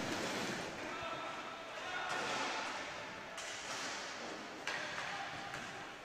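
Faint game sound of an inline hockey match echoing in a large sports hall: a steady hiss of the room with a few light knocks and distant voices.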